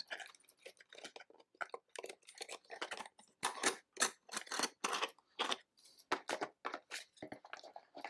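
Plastic miniature bases and figures clicking and scraping against each other and the plastic deck box as they are tucked in by hand: a run of small, irregular clicks.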